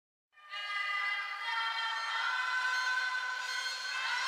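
Music from the song's backing track: sustained chords in the middle and upper range with no drums or bass, coming in about half a second in, the notes changing about one and a half and two seconds in.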